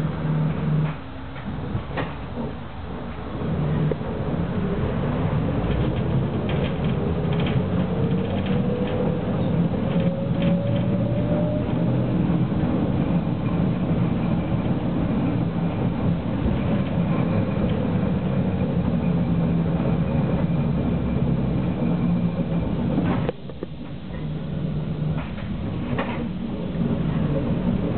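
Tram running along its track, heard from inside the cab: a steady low rumble with a motor whine rising in pitch as it picks up speed from about four seconds in. Near the end the sound drops suddenly.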